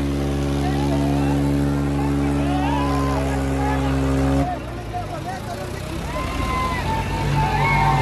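Diesel tractor engines running hard at a steady, held speed while pulling against each other on a tow chain, with people shouting over them. The steady engine note cuts off suddenly about halfway through, and a lower steady note returns near the end.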